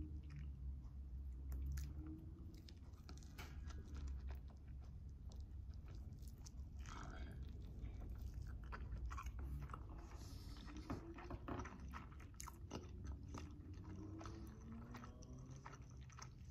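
A person chewing a bite of salmon hand roll (rice, salmon and nori seaweed), faint, with many small crunches and mouth clicks throughout.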